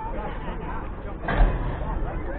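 Indistinct chatter of several voices, with a brief louder burst a little past halfway.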